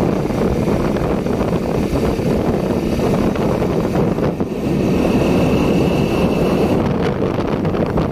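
Wind rushing over a phone microphone on a moving motorcycle, with the bike's engine running underneath as a steady, loud rumble.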